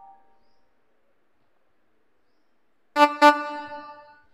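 An electronic keyboard's held chord fades out, followed by about two seconds of near silence. Then two quick keyboard notes, about a quarter second apart, ring on briefly.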